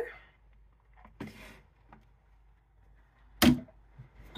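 A plastic storage basket is set back onto a wooden cabinet shelf with one sharp knock about three and a half seconds in, after faint handling rustle.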